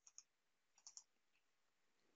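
Faint computer mouse clicks in near silence: two quick pairs of clicks, the second pair a little under a second after the first.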